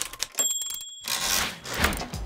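Editing sound effects for an animated title graphic: a quick run of clicks, a short bright ding about half a second in, then a whoosh a little after a second.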